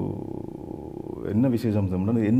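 A man's voice: a low, drawn-out hesitation sound with a creaky, flickering quality for just over a second, then talking again.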